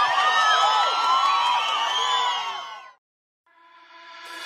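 Live-show crowd cheering and screaming, many voices overlapping, fading out about three seconds in. After a brief silence, music with a steady held chord begins to fade in near the end.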